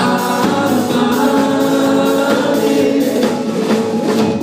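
Live band music: electric guitars and drums with sung vocals, several notes held long.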